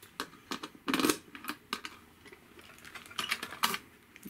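Key working the lock of a steel cash box and the metal lid being opened: a run of sharp metallic clicks and knocks, the strongest about a second in and a quick cluster near the end.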